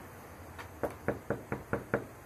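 Knuckles knocking on a front door: a quick run of about six knocks in the second half.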